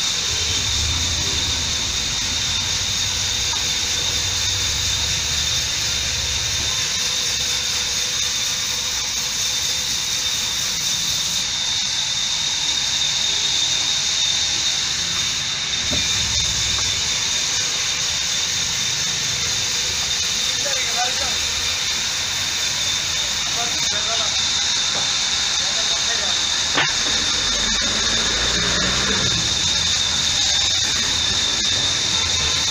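Steady high hiss with a thin steady whistle-like tone in it, and low rumbles now and then.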